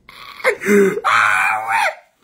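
A man's loud, drawn-out vocal exclamation: a short cry about half a second in, then a longer held one that fades near the end.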